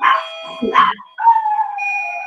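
A dog whining through a video-call microphone: a couple of short, high whines, then from about a second in a long, high note that slowly falls in pitch.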